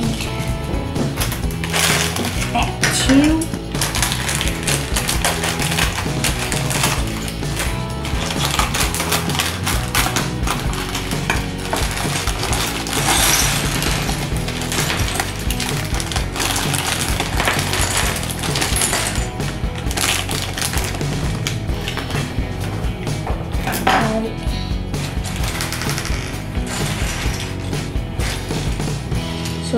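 Background music playing under the clatter and clicking of small plastic Lego bricks being sorted and pressed together, with rustling of a plastic parts bag.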